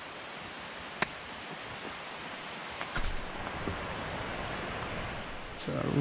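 Steady outdoor hiss of forest background noise while walking a trail, with a sharp click about a second in and a knock around three seconds. A man starts speaking near the end.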